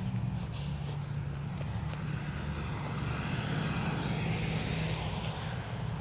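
A distant engine running, heard as a steady low drone, with a hiss that swells in the middle and eases off toward the end.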